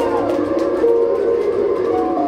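Song backing track playing over the PA at a live rap show, with no vocals: held notes, one of them sliding down in pitch just after the start.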